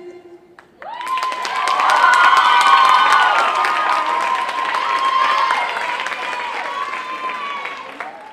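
The music's last held note fades out, then about a second in an audience breaks into loud applause with high-pitched shouted cheers. It peaks a couple of seconds later and slowly eases off.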